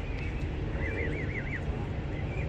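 A bird's high trilled call, a quick run of five or six rising-and-falling notes about a second in, over a steady low rumble.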